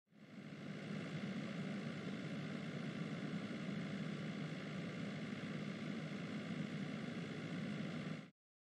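Steady low hum of a car driving, engine and road noise as heard inside the cabin. It fades in over the first half-second and cuts off suddenly at the end.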